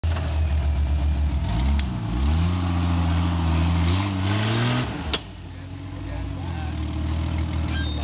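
Jeep Cherokee XJ engine revving hard under load on a muddy hill climb, its pitch dipping and then climbing steadily for a few seconds. Just after five seconds a sharp knock sounds and the engine falls back to a lower, steadier run.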